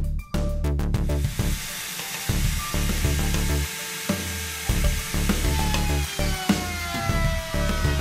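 Bosch router running and cutting slots in hardwood with a 3/8" rabbeting bit, heard under background music with a steady beat. Its whine falls in pitch over the last couple of seconds.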